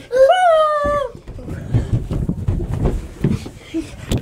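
A child's high voice draws out one word for about a second, then the phone's microphone picks up rustling and irregular low bumps and clicks as it is handled and moved.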